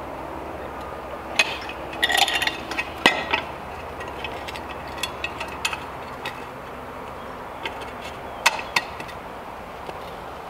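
Light metal clicks and clinks from hand-fitting a scooter's front wheel and axle bolt into the fork: scattered knocks, a quick cluster about two seconds in, the sharpest about three seconds in and two more near the end.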